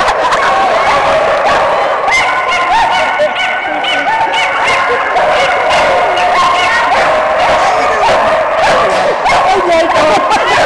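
Many flyball dogs barking and yipping at once, a steady loud din of overlapping high-pitched barks.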